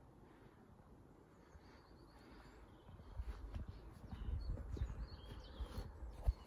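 Faint outdoor ambience: near silence at first, then faint uneven wind rumble on the microphone from about halfway, with a few faint bird chirps.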